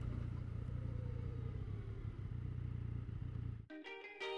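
Yamaha FZ-09's three-cylinder engine running in traffic with road and wind noise, a steady low rumble picked up by the bike-mounted camera. Near the end it cuts off abruptly and music begins.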